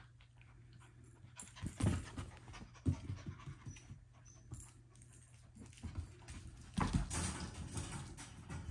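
F1b goldendoodle puppies panting and scuffling as they play-wrestle, with a couple of thumps about two and three seconds in and a longer bout of scrambling near the end.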